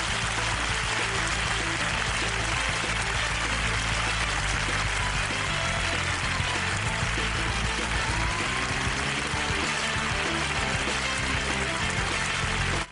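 Studio audience applause over the programme's closing theme music, steady throughout.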